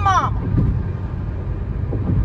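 Steady low road and engine rumble inside a car cabin at highway speed.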